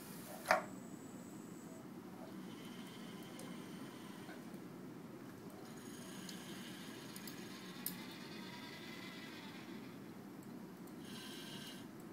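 SCORBOT-ER4u robot arm's DC servo motors whining faintly as the arm lifts a tin can and swings it onto a conveyor belt, the pitch gliding as the joints move. A sharp click comes about half a second in and a lighter click near eight seconds, over a steady low hum.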